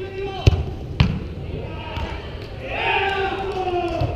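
A soccer ball being kicked: two sharp thumps about half a second apart. Voices shouting follow near the end.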